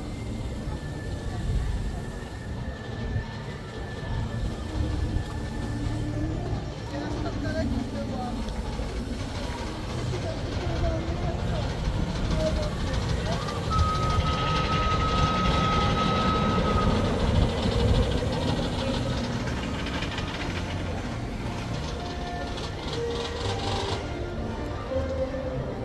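Low, steady rumble of Big Thunder Mountain's runaway mine-train roller coaster running on its track, growing louder in the middle with a held high tone for a few seconds, under the chatter of a crowd.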